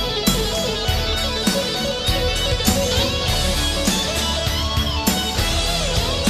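Melodic rock (AOR) song in an instrumental passage, with electric guitar to the fore and no singing.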